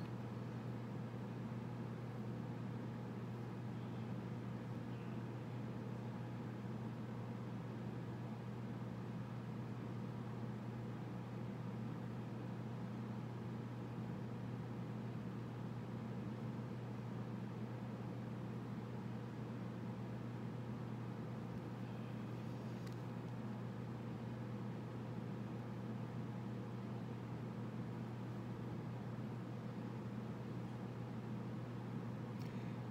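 Steady low hum with a faint hiss, unchanging throughout: room tone. A faint tick comes about three-quarters of the way through.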